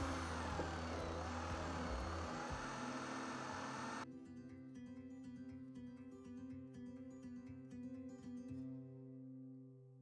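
Electric drill running a Forstner bit as it bores a shallow recess into wood, for about four seconds, then cutting off suddenly. Soft plucked guitar music follows.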